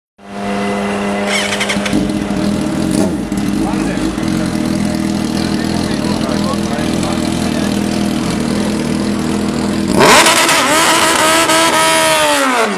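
Drag-racing sportbike engine running at the start line with a steady note, then revved hard about ten seconds in, the pitch climbing and then falling away near the end.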